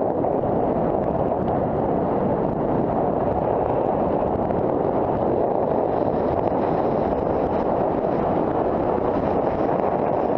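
Steady wind rush buffeting a Contour+2 helmet camera's microphone, mixed with the rumble of knobby tyres over a dirt track as a mountain bike descends at speed.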